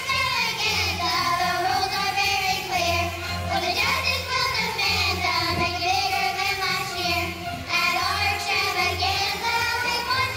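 Young girls singing into handheld microphones, amplified over instrumental accompaniment with a low bass line.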